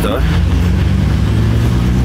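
Loud, steady low rumble of urban background noise, typical of road traffic, with a brief word at the start.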